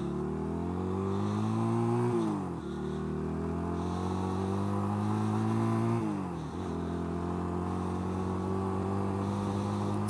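1985 Honda Rebel 250's air-cooled parallel-twin engine pulling the bike up through the gears. The pitch rises, drops sharply at an upshift about two seconds in, rises again and drops at a second upshift about six seconds in, then holds steady as the bike cruises.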